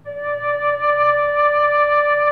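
Soprano recorder playing one steady, held note, D5 (re), blown gently with nearly all the holes covered.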